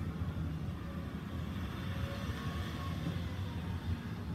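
Steady low hum of room background noise, with no speech.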